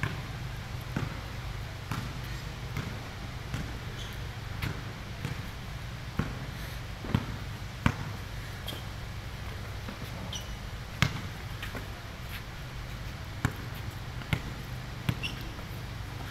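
Basketball bouncing on a concrete court, struck in an irregular run of sharp bounces with a few louder hits. A few short high squeaks and a steady low hum run underneath.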